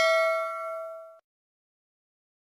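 A bell-like metallic ding, struck just before and ringing with several clear steady tones. It fades and then cuts off abruptly a little over a second in.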